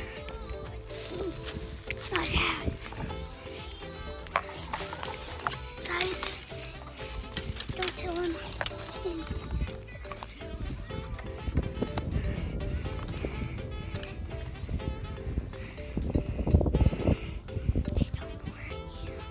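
Background music with steady held notes, over rustling and knocking from a handheld camera being moved through tree branches, heaviest near the end.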